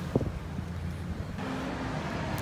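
Wind noise on a handheld phone's microphone with a low background rumble of traffic. About one and a half seconds in it cuts to a quieter indoor background with a steady low hum.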